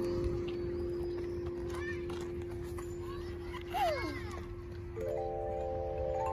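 Outdoor playground chime tubes struck with a mallet in a quick rising run about a second from the end, the tubes ringing on together as a cluster of steady notes. A single lower ringing note carries on from the start.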